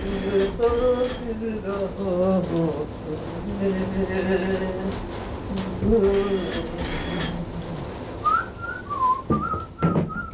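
A person singing a slow tune with long held notes over a steady hiss. From about eight seconds in, a whistled tune follows, with a couple of sharp clicks near the end.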